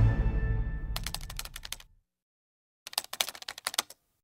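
Background music fading out over the first two seconds, overlapped about a second in by a run of rapid keyboard-typing clicks; after a brief silence a second run of typing clicks comes near the end. The clicks are a typing sound effect for on-screen text being typed out.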